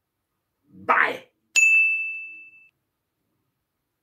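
A short breathy vocal sound about a second in, then a single bright ding, a bell-like chime that rings out and fades over about a second.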